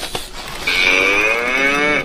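A children's See 'n Say farm-animal toy playing a cow's moo: one long call that starts a little over half a second in, its pitch rising gently and then holding.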